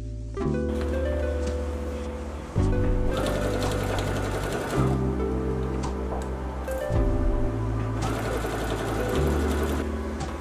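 A Brother domestic sewing machine stitching, under background music with steady chords and a deep bass that change about every two seconds.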